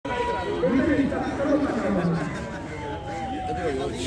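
People talking among themselves, with a distant siren wailing behind them, its single tone sliding slowly down in pitch.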